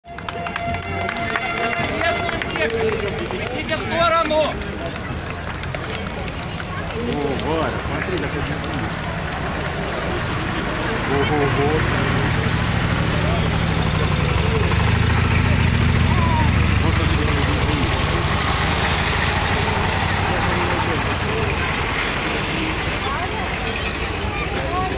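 Crowd chatter along the road while military vehicles, including a motorcycle with sidecar and an army truck, drive past with a low engine rumble that swells from about halfway through and fades near the end.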